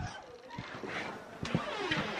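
A few faint knocks and light shuffling from someone moving about and handling things in a small room.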